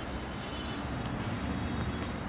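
Steady low rumble of background noise, even throughout with no distinct events.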